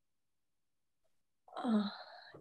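Dead silence, then about one and a half seconds in a woman's short wordless vocal sound that falls in pitch, like a hesitant moan or 'hmm'.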